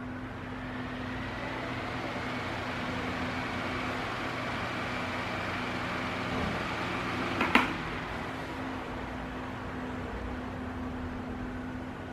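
Mallory ECO TS 30 cm 42 W table fan running: a steady airy whoosh from the blades over a low motor hum, building a little over the first two seconds as it comes up to speed. A single sharp click about seven and a half seconds in.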